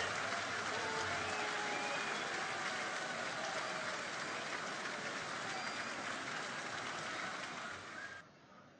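A sumo arena crowd applauding a bout's winner with dense, steady clapping and a few scattered voices. The sound stops abruptly at the very end.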